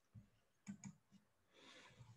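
Near silence with four or five faint, short clicks spread over the two seconds.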